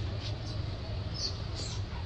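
Baby monkey giving a few short, high squeaks while its mother handles it, over a steady low rumble.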